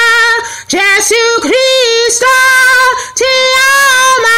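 A woman singing a song in a high voice with no accompaniment: mostly long held notes with a slight waver, separated by short breaks for breath.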